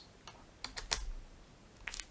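Small clicks of steel screwdriver bits being handled and fitted into a magnetic bit holder. There is a cluster of sharp clicks between a quarter second and a second in, then two more close together near the end.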